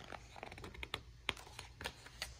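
A page of a hardcover picture book being turned by hand: light paper rustling with a quick string of small clicks, the sharpest about a second and a half in.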